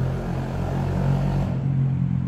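A steady, low engine drone with an even hum.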